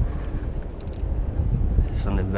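Wind buffeting the action camera's microphone, a steady low rumble, with a few brief high clicks about a second in and once more near the end.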